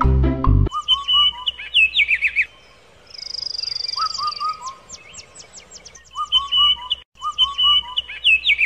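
Marimba-like music cuts off under a second in, and songbirds take over: clear chirps and falling whistled notes in repeated phrases, with a high, fast trill about three seconds in.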